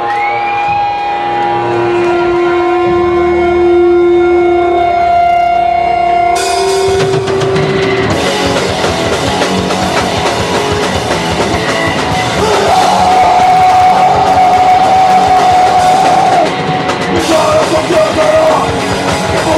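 Live hardcore punk band playing the start of a song: held, sliding notes over drums at first, then about six seconds in the whole band comes in loud and dense.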